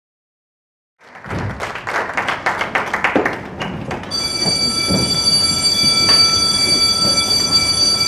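Audience applause, a dense patter of claps that thins out. About halfway through, a steady high tone with several even overtones comes in and holds.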